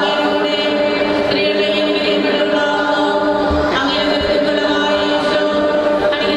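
Choir singing, the voices holding long notes that shift every second or two.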